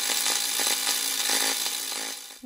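Channel logo intro sound effect: a steady, harsh buzzing noise with a tool-like edge that cuts off suddenly.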